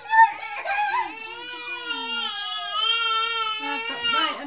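Jack-Jack toy doll playing a recorded baby cry: one long wavering wail, with a second cry overlapping it.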